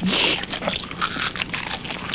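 Cartoon eating sound effect: a character gobbling down a whole pie in quick, irregular munching and crunching bites.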